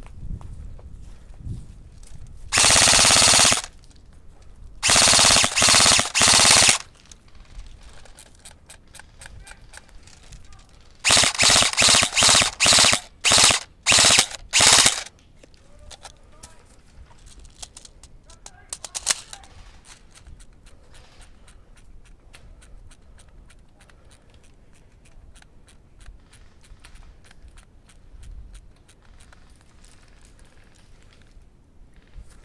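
Airsoft electric rifle (a G&P MK18 Mod 1 AEG) firing in bursts: one about a second long near the start, three close together a few seconds later, then a run of about eight short bursts around the middle. Faint, rapid clicking continues afterwards.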